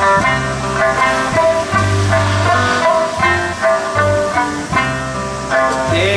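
Live band playing an instrumental passage: a plucked-string melody and strummed guitars over bass notes and drums, with no vocals.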